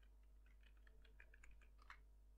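Faint computer keyboard keystrokes: a quick run of about a dozen key clicks as a password is typed, ending with a louder keypress near the end as Enter is struck.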